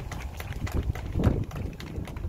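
Outdoor wind rumbling on the microphone, with a stronger gust about a second in, under scattered irregular clicks and knocks.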